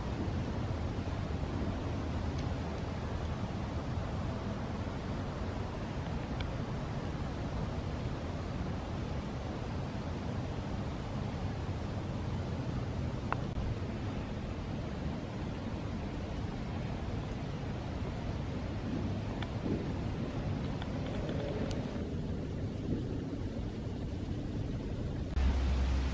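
Steady low rumbling background noise outdoors in woodland, with a few faint clicks and ticks.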